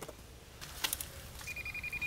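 Handheld metal-detector pinpointer giving a rapid burst of high beeps from about halfway in, the signal that it has picked up metal in the soil it is pressed into. A couple of sharp clicks come before the beeping.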